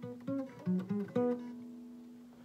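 Steel-string Fender acoustic guitar playing a short lick on the D and G strings around the ninth fret: several quick plucked notes in the first half, then one note left ringing and slowly fading.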